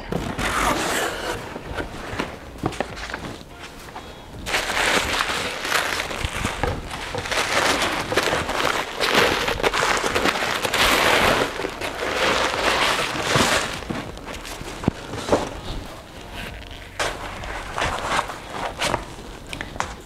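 Packaging being handled as an underwater camera dome port is unboxed: a cardboard box opened and plastic wrapping rustling and crinkling, with many small sharp crackles. The rustling is loudest through the middle and quieter at the start and end.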